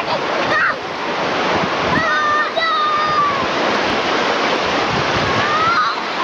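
Shallow beach surf rushing and washing in over the sand, a steady loud wash of water. High-pitched children's calls ring out over it about two seconds in and again just before the end.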